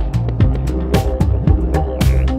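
Background music with a steady drum beat over bass and sustained notes.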